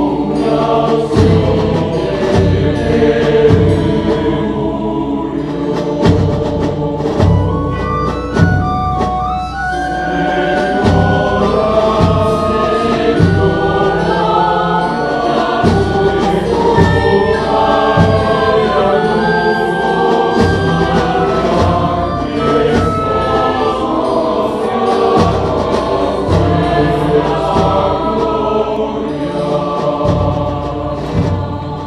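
A large mixed choir singing with instrumental accompaniment, held notes over a steady low beat about once a second.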